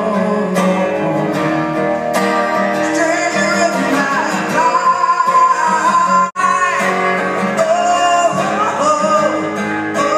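A man singing while strumming an acoustic guitar, both amplified. The sound drops out for a split second about six seconds in.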